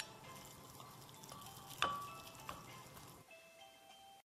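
A spoon stirring shrimp paste with salt, pepper and cornstarch in a glass bowl, with a faint scraping and one sharp clink against the glass a little under two seconds in, over quiet background music.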